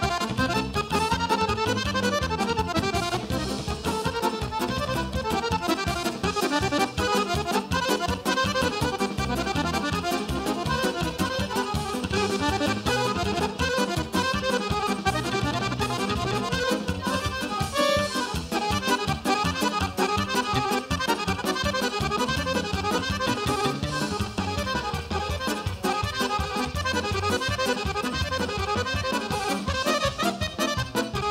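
Chromatic button accordion, a Guerrini, playing a folk tune solo in dense runs of notes, with a band accompanying it.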